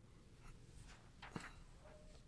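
Near silence, with a few faint rustles of paper being handled and one soft tap a little over a second in.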